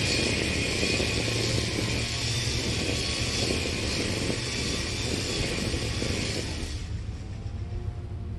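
Hart 40V brushless battery string trimmer running, its line whirring through tall grass, over a steady low rumble. Near the end the trimmer winds down and stops, leaving the low rumble.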